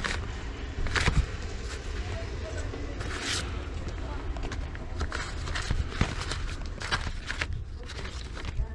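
Paper-sleeved 45 rpm singles being flipped through by hand in a stack: short papery swishes and light slaps as each sleeve is pushed aside, over a low steady rumble.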